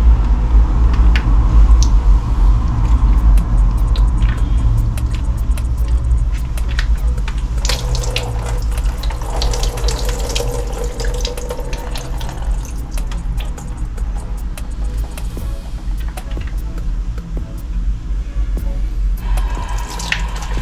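Tap water running and splashing into a stainless steel sink while pineapple chunks are rubbed and rinsed by hand in a bowl, with the wet clicks and knocks of the fruit against the bowl.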